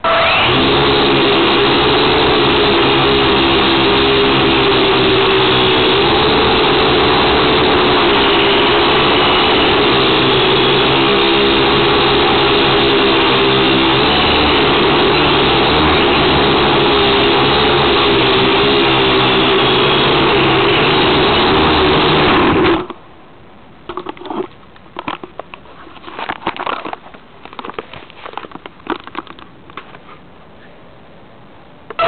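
Syma X1 toy quadcopter's small electric motors and propellers running, heard up close from the camera mounted on it: a loud steady buzz whose pitch wavers slightly as the throttle changes, starting abruptly and cutting off suddenly about 23 s in. After that come scattered light knocks and clatters.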